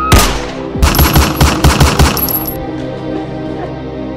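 A loud bang, then a rapid volley of about eight gunshots in just over a second, over background music.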